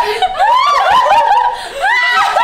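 Several women laughing together in repeated high-pitched peals, easing briefly near the end.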